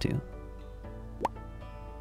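Soft background music with held notes, and a short rising 'plop' sound effect about a second in.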